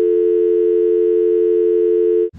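A steady electronic tone of two pitches sounding together, like a telephone dial tone, held without a break.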